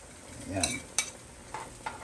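A metal spoon stirring a saucepan of simmering soup and clinking against the pot: a sharp tap about halfway through and two lighter taps near the end, over a faint steady hiss.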